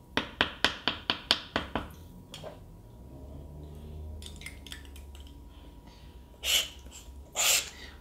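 A quick run of about eight light taps in under two seconds, like a metal lettering pen tapped against a small glass ink bottle, then two short scratchy strokes near the end, like the pen drawn across paper.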